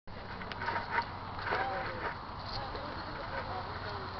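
Indistinct voices of several people talking at a distance from the microphone, too unclear for words, over a steady low background hum.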